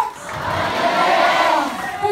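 A voice drawn out in one long call that rises and falls in pitch, with crowd noise behind it.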